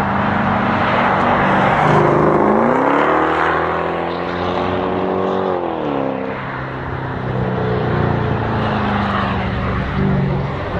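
Mercedes-Benz CL coupé's engine pulling hard away from the corner. The engine note climbs, holds, drops about six seconds in as the driver shifts or lifts, then climbs again.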